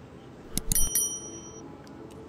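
A notification-bell sound effect: a small bell struck a few times in quick succession about half a second in, its high ringing dying away within about a second.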